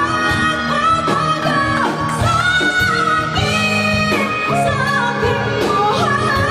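A woman singing a pop song live into a handheld microphone, holding long notes with slides in pitch, backed by a live band.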